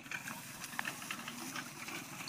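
Two children's bicycles rolling over dry grass and dirt: a steady hiss from the tyres with scattered light clicks and crackles.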